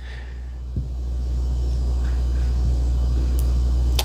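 A steady low hum that grows slightly louder, with a faint click a little under a second in.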